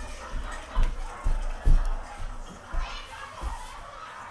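Indistinct voices of children and adults in the background, with several low thumps on the microphone, the loudest about a second and a half in.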